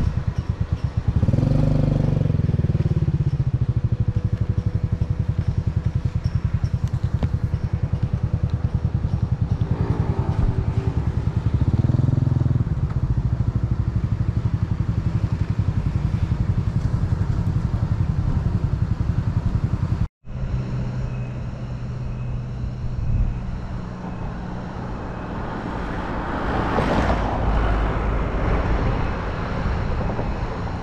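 Motorcycle engine running while riding, picking up revs briefly about a second in and again around ten to twelve seconds in. After a sudden break about two-thirds of the way through, the engine runs on more quietly under road and wind noise, with a swell of noise near the end.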